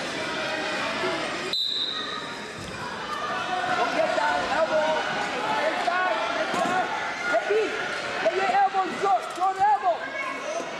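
Overlapping voices and shouts echo through a gym hall, growing louder near the end. A short, high referee's whistle sounds about one and a half seconds in to start the wrestling bout, and the wrestlers' feet and bodies thump on the mat.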